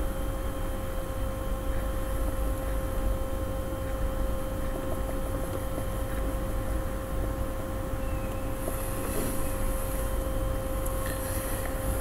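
Steady background noise: a low hum and an even hiss, with a faint steady mid-pitched tone running under it.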